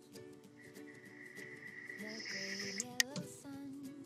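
Faint music with steady held notes that change pitch in steps, and a single sharp click about three seconds in.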